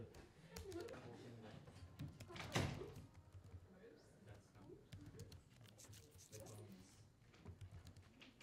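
Quiet typing on a laptop keyboard, scattered soft key clicks, with one louder thump about two and a half seconds in.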